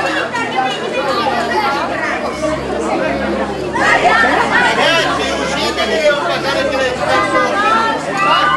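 Many young voices talking over one another in loud, unbroken chatter, with no single speaker standing out.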